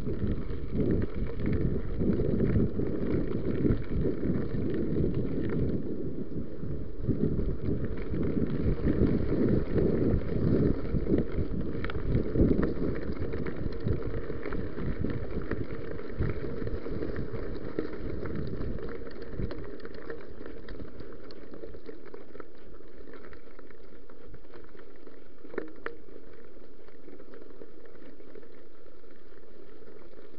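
Mountain bike ridden over a gravel track: a rough rumble of tyres on loose gravel, broken by frequent knocks and rattles of the bike, settling into a steadier, quieter rumble about two-thirds of the way through.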